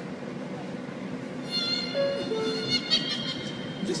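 Subway door chime, a two-note descending 'ding-dong', about two seconds in, over high steady metallic squealing tones from the train that begin a moment earlier.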